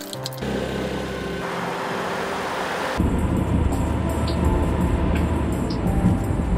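Background music over a light hum, then about halfway a sudden change to the steady low rumble of road noise inside a moving car's cabin.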